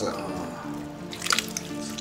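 Background music with wet squelching and dripping as bare hands squeeze and knead oily pieces of cooked pig's trotter in a bowl.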